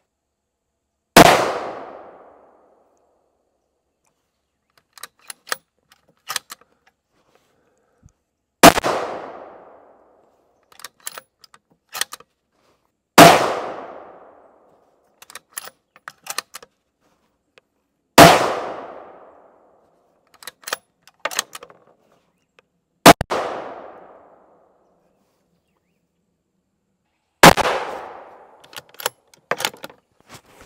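Six rifle shots from a 6.5 Creedmoor bolt-action rifle, spaced about four to five seconds apart, each ringing out for about a second. Short clusters of clicks come between the shots.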